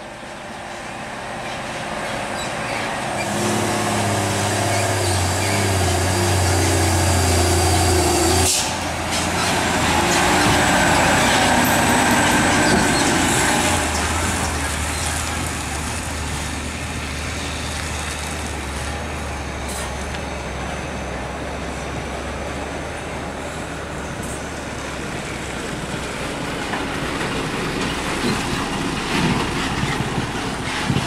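Heavy diesel trucks passing on a hill road, their engines pulling with a low, steady note that swells as the truck nears. The sound breaks off abruptly about a third of the way in and picks up with another truck, running on as a steadier engine hum.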